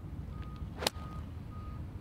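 Golf iron striking a ball off the fairway grass: one sharp, crisp click of the club hitting the ball a little under a second in.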